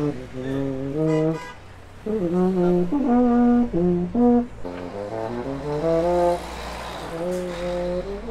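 Baritone horn being played in a run of short held notes that step up and down in pitch, with a brief pause about a second and a half in. It is a buyer trying the horn out.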